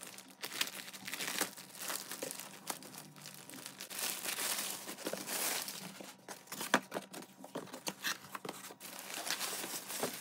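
Plastic mailing bag crinkling and rustling as a parcel is unwrapped by hand, full of irregular sharp crackles, with a cardboard box inside being pulled out and its flaps opened.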